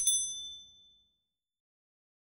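A mouse-click sound effect followed at once by a bright notification-bell ding, ringing out and fading over about a second.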